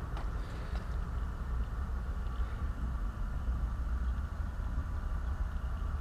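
A steady low mechanical hum, unchanging, with no distinct clicks or knocks.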